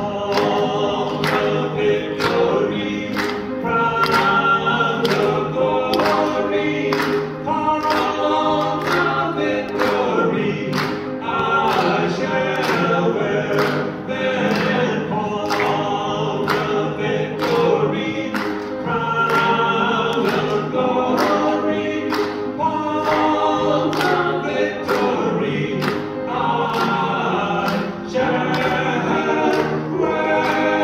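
Male vocal trio singing a gospel song in harmony into microphones, over an instrumental accompaniment with a steady beat.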